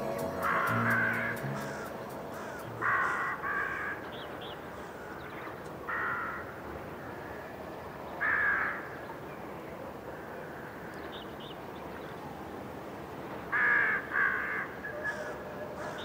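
Crows cawing in the open, single and paired caws a few seconds apart, over a faint steady hiss. Low music notes fade out in the first couple of seconds.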